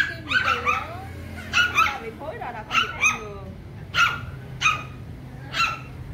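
Small dog yelping and barking repeatedly while being handled: about ten short, high-pitched yelps, often in quick pairs.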